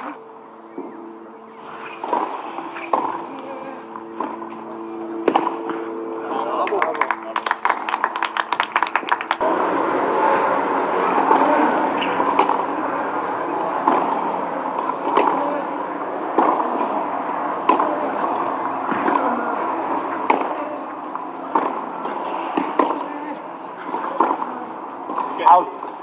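Tennis rally on a clay court: racket strikes on the ball roughly a second apart over a steady background murmur of voices, with a low steady hum in the first part that stops abruptly. A call of "Out" comes at the very end.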